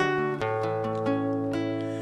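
Acoustic-electric guitar strummed, opening a song: one chord, then a change to another chord about half a second in that is left to ring and fade.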